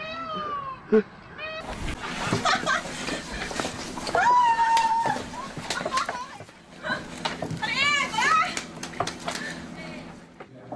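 Several high-pitched cries and squeals over background chatter, one held steady for most of a second about four seconds in and a cluster of short rising-and-falling ones near the end, with scattered small knocks.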